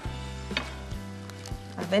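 Soft background music of held notes, with a couple of faint taps and crumbly rustles as pumpernickel crumbs are pressed into a metal springform ring.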